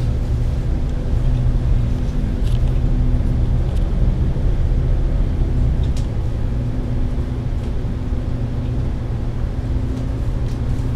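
Interior sound of a Volvo B9TL double-decker bus under way, heard from the upper deck: a steady low drone with a hum in it, and a few faint rattles now and then.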